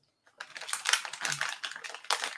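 Rapid, irregular clicking and clatter of small objects being rummaged through by hand on a desk, starting about a third of a second in.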